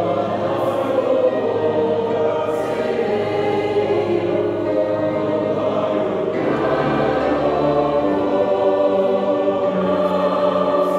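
A mixed choir of men's and women's voices singing in harmony, holding sustained chords. About six seconds in, the harmony shifts to a new chord with lower voices coming in.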